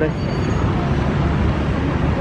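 Steady city street traffic noise, a low even rumble from passing cars and motorbikes.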